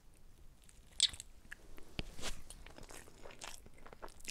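Close-miked chewing and mouth sounds of a person eating a soft baked pancake, with a few short clicks, the sharpest about two seconds in.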